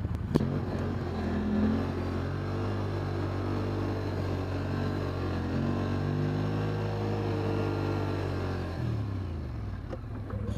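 Quad (ATV) engine under load, its revs climbing early as it pulls up a hill, holding steady, then dropping near the end as it crests. A sharp knock sounds just after the start.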